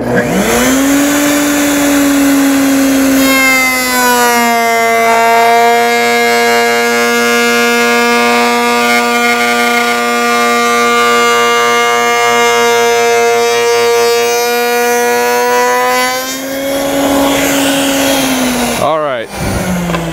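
Table-mounted router with a large 45-degree lock miter bit, set to a slow speed, starts up and spins up to speed. A few seconds in its pitch drops and holds as a board is fed through the bit, then rises again as the cut ends. Near the end it is switched off and winds down.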